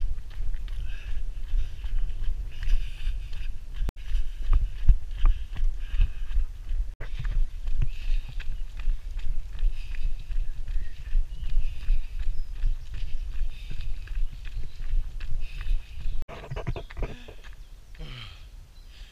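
A runner's footfalls beating along a trail path at a running pace, under heavy low wind rumble and handling noise on a hand-held action camera's microphone.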